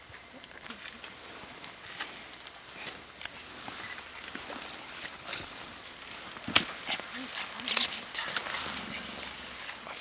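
Mountain gorilla feeding: irregular crackling and rustling of leafy stems being pulled and chewed, with scattered sharp snaps, the loudest a little past the middle. Two short high peeps sound, one near the start and one about halfway.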